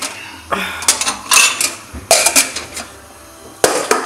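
Glasses and dishes clinking and clattering as they are handled in a kitchen cupboard: about five sharp knocks with a bright ring, spread over a few seconds.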